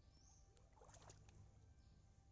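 Faint sloshing of shallow pond water around a person's wading legs, with a short cluster of small splashes about a second in.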